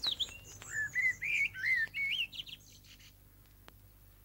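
A bird singing a quick run of warbling whistled notes, rising and falling, that stops about three seconds in.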